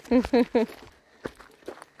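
Two short voiced syllables from a person, then about three footsteps on a dirt forest trail.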